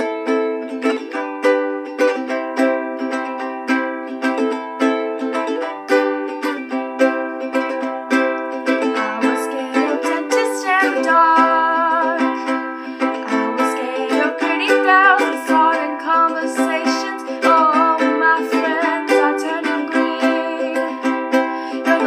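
Ukulele strummed in a steady rhythm, its chords changing throughout. A young female voice starts singing along about halfway through.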